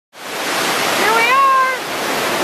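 Steady rush of fast-flowing water, starting abruptly just after the start. About a second in, a person's high voice holds a drawn-out vowel for under a second.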